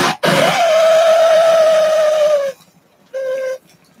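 Bong hit being lit and drawn on: a steady whistling hiss, sinking slightly in pitch, that starts suddenly and cuts off after about two seconds. A second, shorter whistle follows about half a second later.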